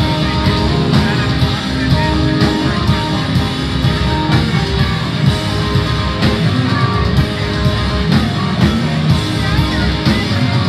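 Punk rock band playing live and loud: electric guitars over a steady, driving drum beat.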